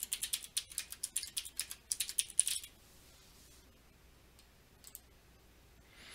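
Computer keyboard typing: a quick run of keystrokes for about two and a half seconds, typing in a name, then a single click about five seconds in.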